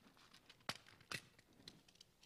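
Near silence, broken by two faint clicks, about two-thirds of a second and just over a second in: small handling sounds of something being opened by hand.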